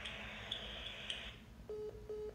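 Phone on speaker: faint open-line hiss, then near the end a repeating beeping tone as the call cuts off, the sign that the other party has hung up.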